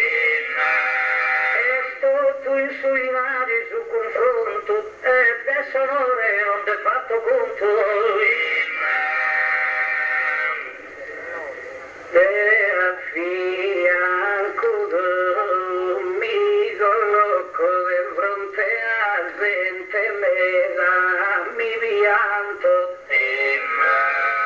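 A man's voice singing an improvised verse in the slow, drawn-out chant of Sardinian sung poetry (gara poetica), holding and bending long notes. The singing dips and breaks off briefly about 11 seconds in, then picks up again.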